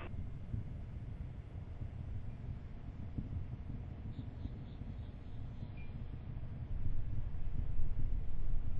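Low, steady rumble of the Space Shuttle launch heard from far off, growing louder about two-thirds of the way through.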